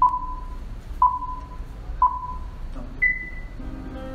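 Four electronic countdown beeps, one a second: three at the same pitch, then a fourth an octave higher, each with a sharp start and a short fading tail, the pattern that marks the start of a video.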